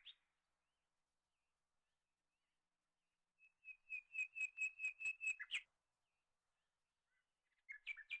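Bird-like chirping: a quick run of about ten short, high chirps on one steady pitch, about five a second and lasting about two seconds, then a shorter, softer run near the end. Nearly silent in between.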